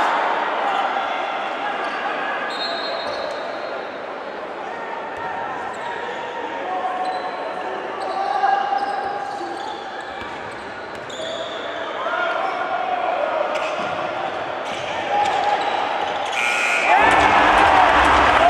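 Basketball game sounds in a gymnasium: a ball dribbling and bouncing on the hardwood, shoes squeaking, and the steady chatter and shouts of players and a crowd. About a second before the end, the crowd noise rises sharply as a basket is scored.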